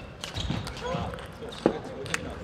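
Table tennis rally: the plastic ball clicking sharply off bats and the table, with a loud single knock about one and a half seconds in as the point ends.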